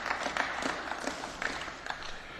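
Applause in a parliamentary debating chamber: many people clapping at once.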